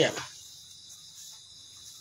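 Faint, steady high-pitched chirring of insects such as crickets, heard in a gap after a man's voice trails off.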